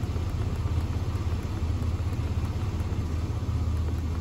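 A 1999 GMC Jimmy's 4.3-litre V6 engine idling steadily, warmed up, a constant low hum with no revving.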